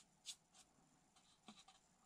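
Near silence, with two faint brief scratches, about a third of a second in and again about a second and a half in, from a brush and fingers on the tissue-covered balsa model.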